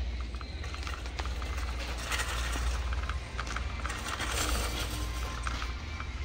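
A red shopping cart rolling across a concrete store floor, its wheels giving a steady low rumble and the cart rattling lightly. Music plays in the background.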